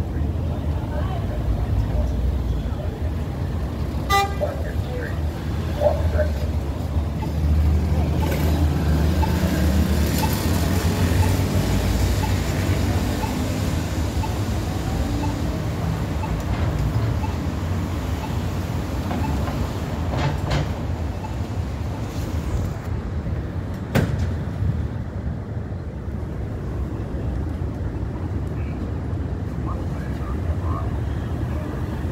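City street traffic: cars passing with a steady low rumble that swells and fades. A short car horn toot sounds about four seconds in, and there is a single sharp knock later on.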